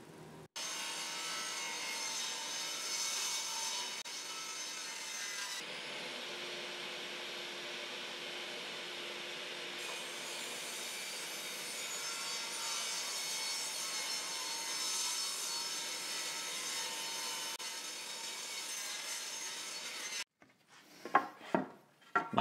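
Bosch table saw ripping a pine 1x4 board lengthwise: the saw runs steadily while the blade cuts through the wood, then stops abruptly about two seconds before the end.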